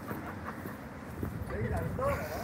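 Background chatter of people talking outdoors, with one voice rising and falling more clearly near the end.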